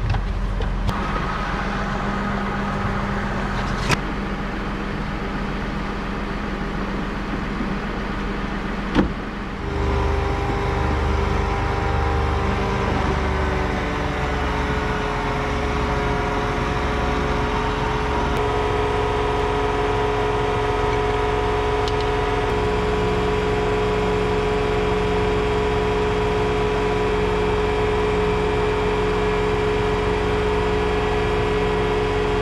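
John Deere 8270R tractor's six-cylinder diesel engine idling steadily, with two sharp clicks in the first ten seconds and a change in the engine note about ten seconds in.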